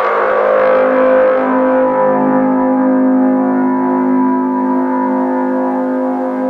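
Electronic music in a beatless break: a sustained droning chord with no drums, its brighter upper tones slowly fading away over the first few seconds.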